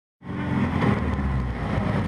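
City bus engine running with road noise, heard from inside the passenger cabin: a steady low rumble that starts suddenly just after the beginning.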